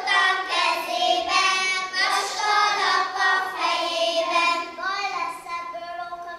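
A group of young children singing a song together in unison, in long held notes, growing quieter near the end.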